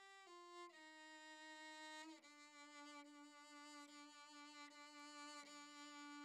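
Solo violin playing a slow melody of long bowed notes that step downward, then one note held for about three seconds before the line moves on.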